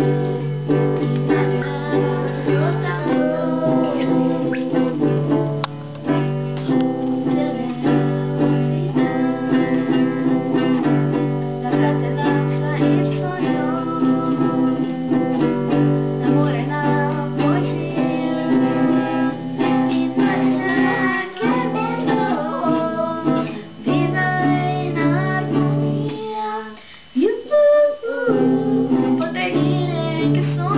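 Acoustic guitar played in sustained chords that change every second or two, with a short break about three seconds before the end before the chords resume.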